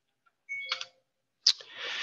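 A few faint short clicks, then a sharp click about halfway through followed by a breath drawn in just before the man starts speaking again.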